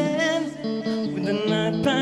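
Live rock band playing: electric guitars and bass holding sustained chords, with a voice wavering in pitch near the start and a sharp drum hit near the end.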